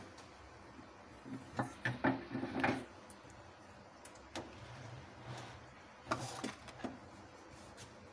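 Wooden rolling pin knocking and rolling on a flat worktop as a stuffed potato paratha is rolled out: a cluster of short knocks about two seconds in, then a few single knocks later.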